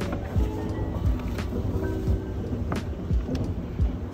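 Soft lo-fi background music with a beat, over the steady low rumble and hiss of a moving escalator.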